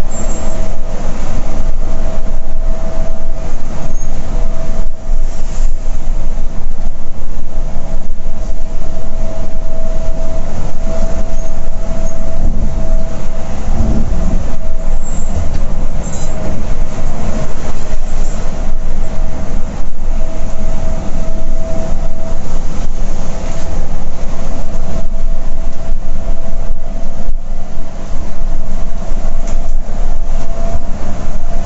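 Volvo B11R sleeper bus cruising on a highway, heard from inside the front cabin: loud, steady road and drivetrain rumble with a faint steady whine, and a low thump about halfway through.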